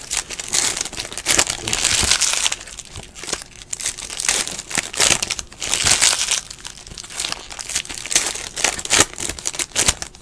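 Foil trading-card pack wrappers crinkling and tearing as packs are pulled open by hand, in irregular rustling bursts.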